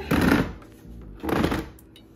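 Plastic housing of a Keurig coffee maker scraping across a granite countertop as it is turned around, in two short bursts, one at the start and one a little over a second in.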